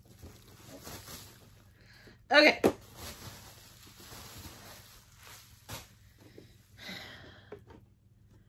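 Faint rustling of bubble wrap and plastic packaging as it is pulled off an item being unboxed, with a single sharp click partway through.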